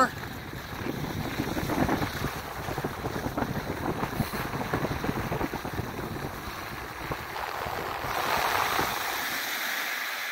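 Wind buffeting a phone microphone while skiing downhill, mixed with skis hissing over groomed snow; the hiss grows brighter and louder about eight seconds in.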